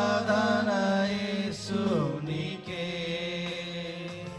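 Male voices singing a Telugu worship song in long held notes over a steady musical backing, the melody stepping down to a lower held note about two seconds in.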